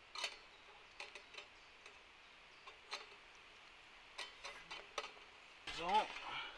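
Faint, scattered light metallic clicks and ticks, about a dozen spread irregularly, as the gas connection fitting is handled and screwed onto the side of a stainless steel portable gas grill.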